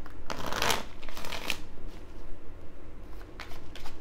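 A deck of cards being shuffled by hand: two strong riffling rushes in the first second and a half, then a few lighter flicks of cards near the end.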